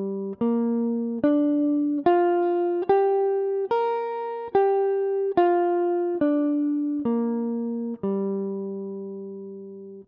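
Gibson ES-137 Custom semi-hollow electric guitar with a clean tone, playing a Gm7 arpeggio in fifth position as single plucked notes at a slow even pace, a little more than one a second. The notes climb to a peak about four seconds in, then step back down, and the last note rings for about two seconds before stopping.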